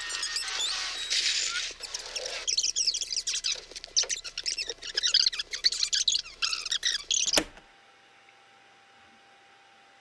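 Fast-forwarded recording of a LaserPecker Pro laser etcher at work: rapid, high chirping and squeaking that ends in a sharp click about seven and a half seconds in, then cuts to silence.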